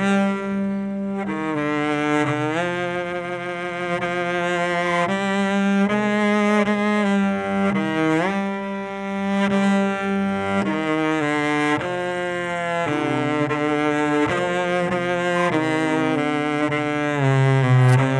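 Solo cello played with the bow: a melody of changing notes over a held low note, with a few sliding rises between notes.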